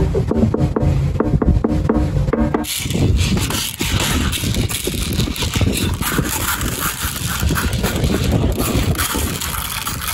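Green plastic playground drums struck by hand in a quick run of pitched, hollow hits. After about two and a half seconds the hits give way to a rougher, hissy noise with fainter taps.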